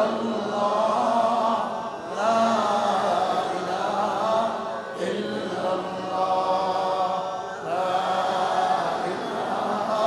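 A man's voice chanting in four long melodic phrases with brief breaths between them: the sung, tune-carried delivery of a Bangla waz sermon, heard through his headset microphone.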